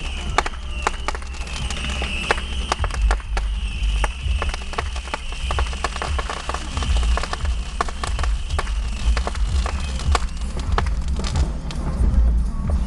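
Fireworks popping and crackling in quick, irregular succession, over a low rumble and a steady high-pitched whine.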